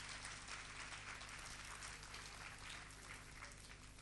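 Audience applauding in a club hall, the clapping thinning out and dying away toward the end, over a low steady hum.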